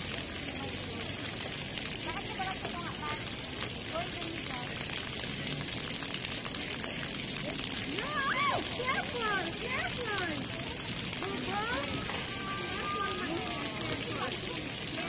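Splash pad water jets spraying with a steady hiss, under the calls and shouts of children playing, which grow louder about halfway through and again near the end.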